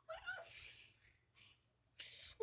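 A boy's voice: a short sung note bending upward, trailing off into a breathy hiss, then a brief breath about a second and a half in.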